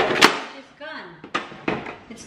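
Sharp plastic clicks and knocks from a white plastic ice-cube box being handled: one about a quarter second in and two more in the second half.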